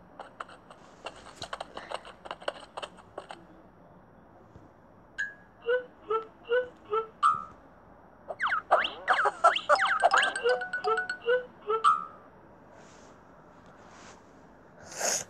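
Playful cartoon music and sound effects from a children's story app: a scatter of light ticks, then short plinking notes, then a busy run of quick sliding whistle-like tones mixed with more plinks near the end.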